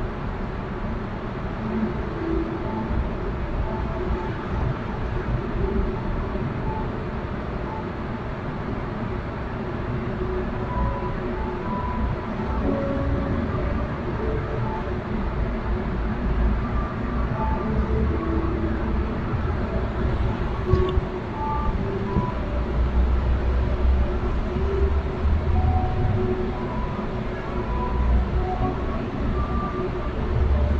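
Steady low rumble and hiss of room noise, with faint scattered soft notes of quiet instrumental music.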